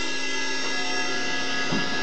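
A live band's amplified instrument holding one steady, sustained droning chord of many tones, with no drums playing.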